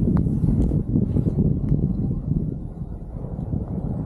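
Wind buffeting the camera's microphone as a skier descends a groomed run, a ragged low rumble with the skis sliding on the snow underneath; it eases a little about three seconds in.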